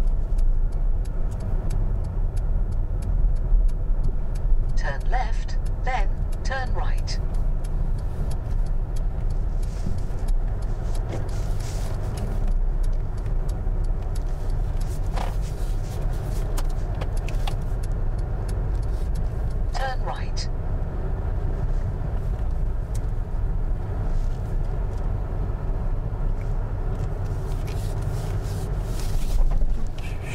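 Inside a car's cabin, a steady low rumble of engine and road noise as the car drives slowly, with a few short, brief sounds over it. The level falls suddenly right at the end.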